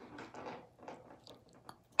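Faint handling sounds of small plastic toy figurines being gripped and set down on a countertop: soft rustles and a few light clicks.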